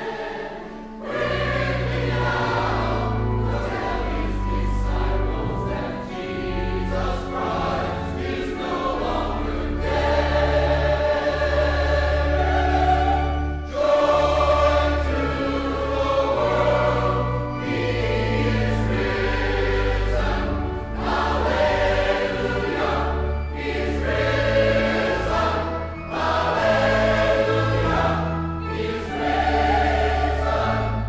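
Background music: a choir singing a slow, hymn-like song over a low, sustained bass accompaniment.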